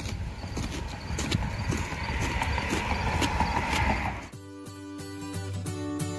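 A plastic scoop scraping the stringy pulp and seeds out of the inside of a pumpkin, a dense run of scrapes and clicks. About four seconds in, background music with steady held notes takes over.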